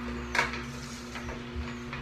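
Green Star Elite twin-gear juicer running with a steady low hum as a piece of ginger is pushed into its feed chute with a wooden plunger; a single sharp knock about half a second in.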